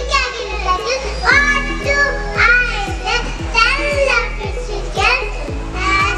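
A group of small children singing or chanting a rhyme together through a microphone and PA, with backing music and a regular beat under their voices.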